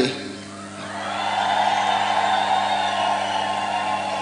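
Large outdoor crowd cheering, swelling about a second in and then holding steady. A steady electrical hum from the public-address system runs underneath.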